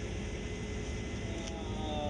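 Steady drone of a Case IH 8250 combine heard from inside its cab while harvesting: engine, threshing and header running under load, with an even low rumble and a constant hum.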